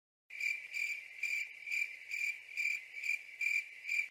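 Cricket chirping sound effect: a high, even chirp repeating about twice a second, dropped into a sudden cut of the music as the stock 'crickets' gag for an awkward silence.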